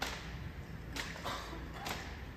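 Silent drill team rifle movements done in unison: three sharp strikes of hands and rifles about a second apart, each echoing off the walls of a large hall.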